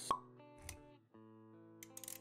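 Intro music of held tones with animation sound effects: a sharp pop just after the start and a low soft thud a little later. The music cuts out briefly about a second in, then resumes.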